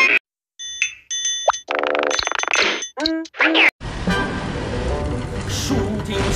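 A quick run of short cartoon sound effects separated by brief gaps, among them a fast rising whistle and a falling note. About four seconds in, a steady rumble of car engine and tyre noise takes over.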